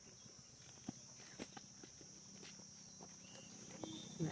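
Near silence: a few faint footsteps on dry dirt over a steady, high insect drone.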